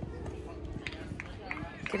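Faint voices calling out across an outdoor field over low, steady background noise; a loud shout begins right at the end.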